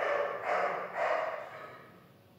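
Lockstitch sewing machine stitching in three short runs of about half a second each, the last one fading away.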